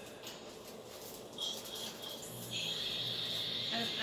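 Faint rustling of paper being handled and rolled up, under a high, steady shrill tone that comes in briefly a couple of times and then holds from about halfway on.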